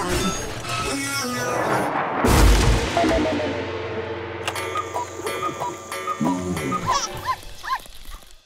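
Cartoon soundtrack: background music with a heavy comic crash thud a little over two seconds in, then a small dog's short yips near the end.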